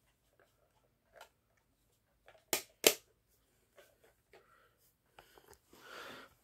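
Two sharp clicks about half a second apart, near the middle, among scattered faint ticks and a soft rustle near the end: handling noise.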